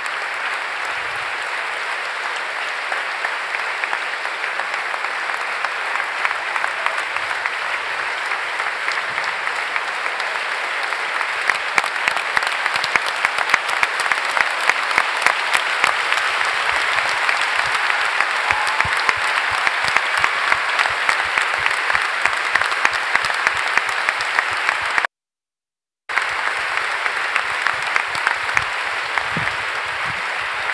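Large audience applauding steadily in a standing ovation, the clapping growing stronger about a third of the way in. The sound cuts out completely for about a second near the end.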